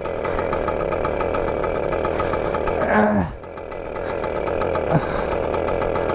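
Small engine of a children's mini motorcycle running under way. Its note drops briefly a little after three seconds in, then picks up again. The rider takes this running as a sign that something is not right with the bike.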